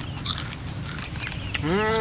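Potato chips being crunched and chewed, with short crackles and the rustle of a foil snack bag, scattered through the first second and a half.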